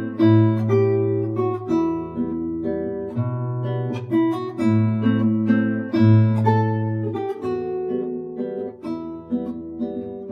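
Classical guitar played fingerstyle at a slow tempo: a low bass note rings under plucked higher notes, the bass changing every second or two.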